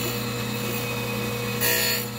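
Surface grinder running with a steady hum, its abrasive wheel grinding the hardened steel edges of two old hand files in a heavy rough-grind pass. Near the end the grinding gets louder, a rush of hiss as the wheel bites into the steel.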